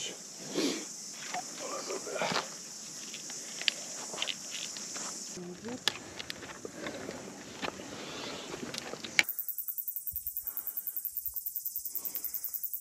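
Scuffs and footsteps on rock with occasional sharp clinks while a hiker climbs down a steep rock face holding a fixed steel chain, over a steady high hiss. About nine seconds in the sound changes abruptly to a rapid high-pitched pulsing, about eight pulses a second.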